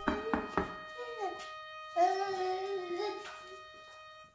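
A young child's voice, a short sound about a second in and then a drawn-out, wavering vocal sound for over a second, over soft instrumental music with long held notes. Three quick knocks come right at the start.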